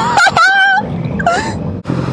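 A person's high-pitched, drawn-out vocal exclamation, then a short second one about a second in, over the steady hum and wind rush of a motorcycle riding.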